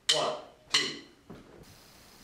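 A voice counting in a band: two short counts about three-quarters of a second apart, with a little room echo.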